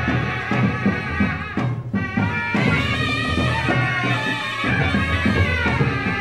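Live Purik folk music from Kargil: a wavering melody over repeated drum beats.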